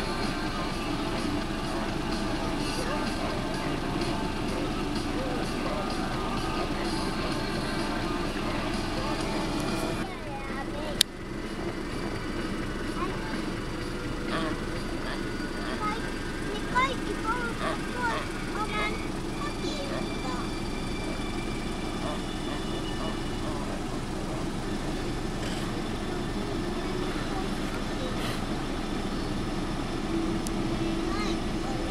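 Steady drone of a car engine idling while the car waits in the road. About eleven seconds in there is a single sharp click, and a few brief high chirps follow some seconds later.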